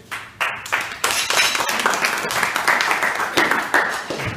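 A small group clapping and applauding, building about a second in and going on for about three seconds.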